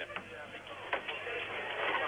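A short pause in the TV commentary: faint, steady background noise from the broadcast soundtrack, with a couple of soft clicks.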